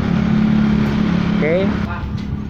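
A motor vehicle's engine running on the road with a steady low drone that stops just before the end.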